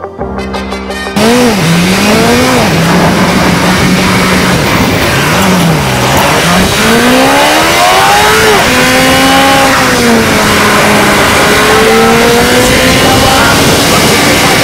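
A car engine, loud and close, cuts in about a second in and revs up and down several times, its pitch climbing and dropping as it accelerates through the gears. It then pulls at steadier revs with the pitch slowly wavering.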